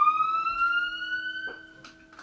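A siren wail on the title card: one tone that sweeps up fast, keeps rising slowly and higher, and fades away near the end.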